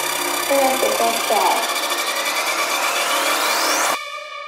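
Psytrance music with a spoken vocal sample over it. The deep bassline drops out about a second and a half in, and a rising synth sweep builds and cuts off abruptly at the end, leading into a breakdown.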